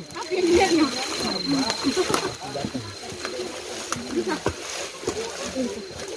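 Several people's voices talking at once, indistinct, while a group picks its way down a rocky trail. A thin, steady high whine runs under the voices for the first few seconds.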